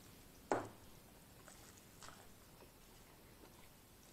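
Close-miked mouth sounds of chewing a mouthful of steak burrito, with one sharp, loud mouth click about half a second in and a few faint wet clicks after.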